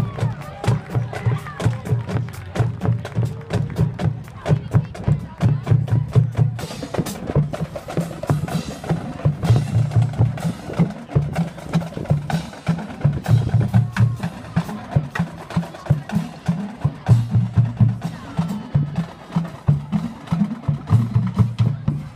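Marching band drumline playing a march-off cadence: snare and bass drums in a steady, driving rhythm, with many sharp clicks over the low bass-drum pulse.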